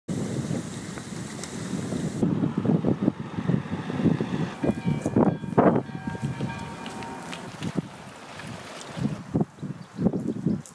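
Wind buffeting an outdoor microphone: an uneven low rumbling rush that swells and dips in gusts.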